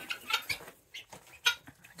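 Chickens clucking faintly in a few short, scattered clucks, with a brief sharp click about one and a half seconds in.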